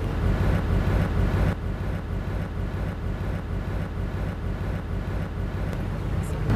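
Steady low engine rumble with a constant hum, a little duller after about a second and a half.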